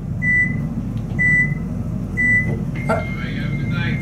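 Elevator emergency phone beeping, a short high beep about once a second, while a call from the security desk is open on the line. Near the end the beeps give way to a longer steady tone and a faint voice, over a low steady hum in the car.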